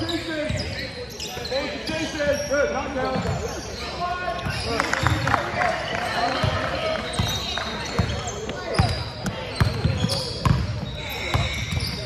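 A basketball bouncing repeatedly on a hardwood gym floor as it is dribbled, with players' and spectators' voices in the background.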